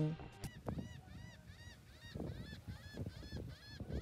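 Laughing gulls calling in a continuous run of short arched cries, about three a second, with a few soft low thuds underneath.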